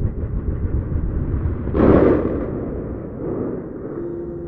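A daytime fireworks barrage going off. It starts suddenly into a dense run of rapid bangs and pops, reaches its loudest swell about two seconds in, then tapers off.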